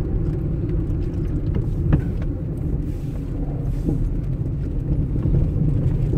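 Steady low rumble of a car's engine and tyres while driving along a paved road.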